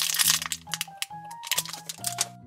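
A clear plastic candy bag crinkling and crackling as it is handled, over background music with held notes.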